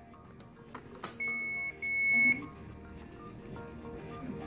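Alaris infusion pump beeping twice, two steady high beeps of about half a second each, the second louder, just after a click as the pump is handled, over background music.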